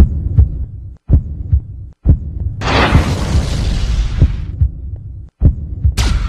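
Channel ident sound design: deep, pulsing thuds like a heartbeat, broken by sharp hits and short dropouts, with a swell of hissing noise about two and a half seconds in that fades away a second and a half later.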